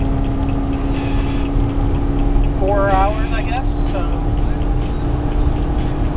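Road noise inside a car cruising on the interstate: a steady low rumble of tyres and engine with a constant hum. A brief wavering voice is heard about three seconds in.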